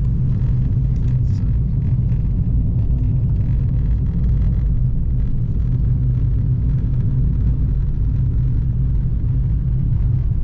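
Car driving on a road, heard from inside the cabin: a steady low rumble of engine and tyres.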